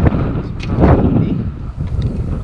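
Wind buffeting an action-camera microphone: a loud, uneven low rumble.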